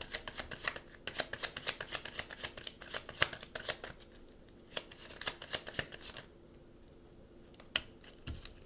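A deck of oracle cards being shuffled by hand: rapid rustling clicks for about six seconds, then stopping, with one more click near the end.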